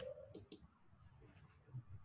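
Near silence on a video-call line, broken by two faint short clicks close together about half a second in.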